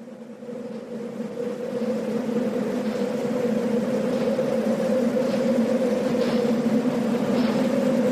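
A steady drone with two low held tones over a hiss, fading in and swelling louder throughout, with faint light ticks about once a second in the second half: the opening of a black metal demo's intro track.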